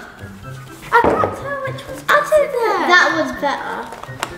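Young girls' excited wordless exclamations, gliding up and down in pitch, starting about a second in and running to near the end, over background music with a steady bass line.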